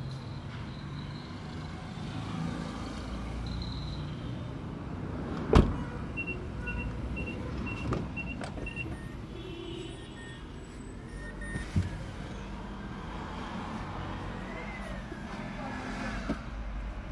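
A Mazda CX-9 SUV's door slamming shut about five and a half seconds in, followed by two softer knocks. Between the first two there is a run of six short, evenly spaced electronic beeps. A low steady hum runs underneath.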